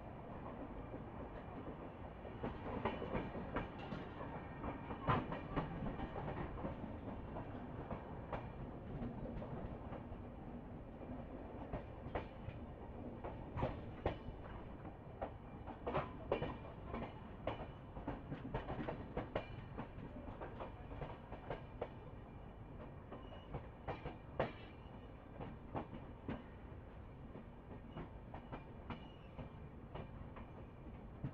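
Passenger train coach running along the track, heard from its open doorway: a steady rumble of wheels on rail, broken by frequent irregular clicks and knocks from the wheels over the rails.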